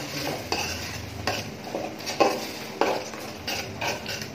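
A metal spoon stirring chunks of beef in thick spiced gravy in a metal pot, with irregular scrapes and clinks of the spoon against the pot's side and bottom, roughly once or twice a second.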